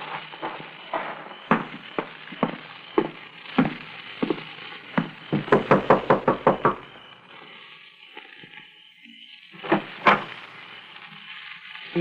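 Radio-drama sound effects: footsteps walking up to a door. About halfway through comes a rapid knocking on the door, and another sharp knock near the end.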